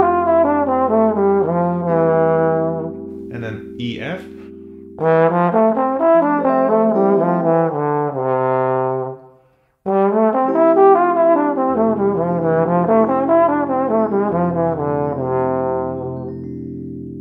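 Slide trombone playing jazz exercise phrases, each an arpeggio up and a scale back down, over a steady held backing chord. There are three phrases, with short breaks about three and nine seconds in.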